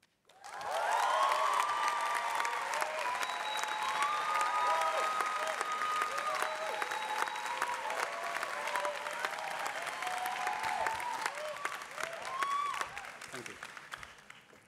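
Audience applauding with cheering voices calling out over the clapping. It starts about half a second in and dies away near the end.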